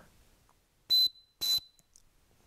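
A small 3D-printed plastic whistle built into a Leatherman Tread bracelet link, blown twice in short, shrill blasts about half a second apart.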